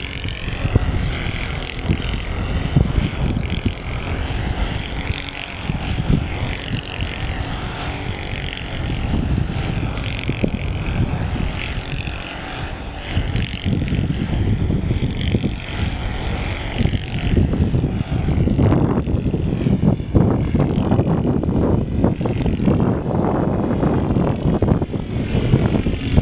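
Wind buffeting the microphone in heavy gusts, strongest in the second half, over the distant, wavering drone of a Saito 125 four-stroke glow engine on a flying RC plane.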